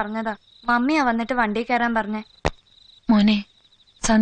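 Crickets chirping in a steady, high, pulsing trill behind a drawn-out, sing-song voice, with one sharp click about two and a half seconds in.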